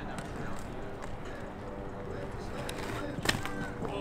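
BMX bike being ridden through a trick on a concrete rooftop under faint background chatter, with one sharp clack of the bike striking the concrete about three seconds in.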